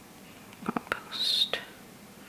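A woman whispering under her breath, with a hissed 's' about a second in and a few short clicks around it, as she types a search word on her phone.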